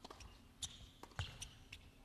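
A tennis ball being struck by racquets and bouncing on a hard court: a handful of sharp, short pops, the loudest a little past the middle.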